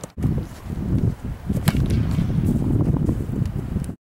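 Wind buffeting the microphone with a loud low rumble, and about a second and a half in, one sharp smack of a foot kicking an American football.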